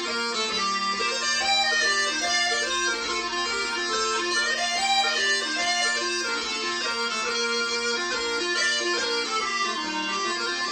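Three sets of bellows-blown small bagpipes, two of them Northumbrian smallpipes, playing a kadril dance tune together over a steady drone.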